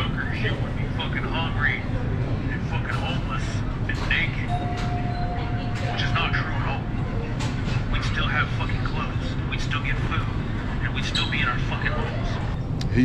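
Indistinct voices over a steady low rumble, with one thin steady tone lasting about two and a half seconds near the middle.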